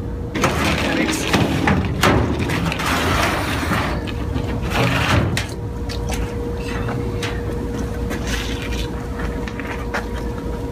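Large flexible plastic suction hoses being handled and laid over a galvanized steel tank: irregular rustling, scraping and knocks, busiest in the first half, over a steady faint hum.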